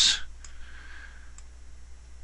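Two faint computer mouse clicks, about a second apart, over a steady low hum.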